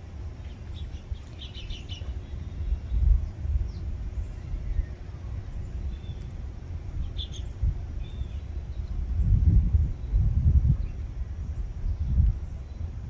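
A few short, high chirps from small songbirds at a feeder: a quick cluster about a second in and a couple more partway through. Under them runs a steady low rumble that swells twice, loudest near the end.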